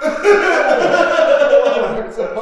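A man's loud, drawn-out wordless vocalizing that bends up and down in pitch, with hardly a break.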